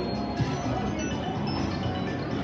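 Casino slot machines playing a steady mix of electronic chimes and bell-like jingles.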